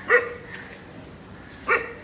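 A dog barking twice: two short, loud barks about a second and a half apart.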